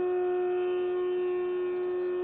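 A steady droning tone held on one pitch, with fainter overtones above it, unchanging throughout.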